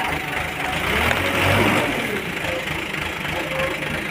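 Engine of heavy plant machinery running at idle, a steady rumble that swells for a moment about a second in.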